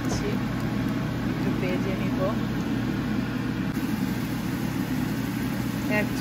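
Breaded chicken strips shallow-frying in hot oil in a pan, over a steady low hum.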